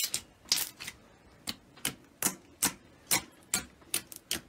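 Fingertips poking into a thick mound of slime, each press giving a short, sharp pop in a steady rhythm of about two to three a second.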